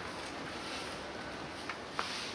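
Outdoor city street ambience: a steady wash of distant traffic and street noise, with one short sharp tick near the end.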